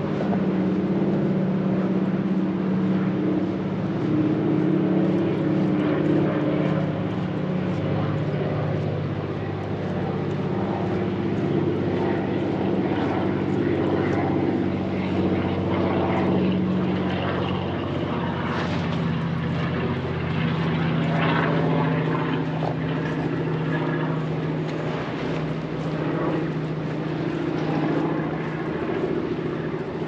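A steady low engine drone made of several held tones that shift slightly in pitch.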